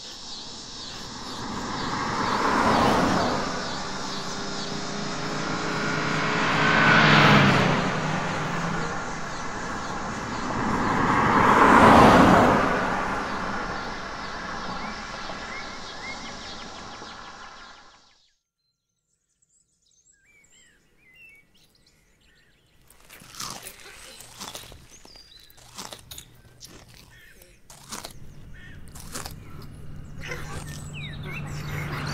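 Three rushing pass-bys of vehicle noise, each swelling to a peak and dying away, about 3, 7 and 12 seconds in. The sound cuts out about 18 seconds in. After that come faint bird chirps and scattered clicks.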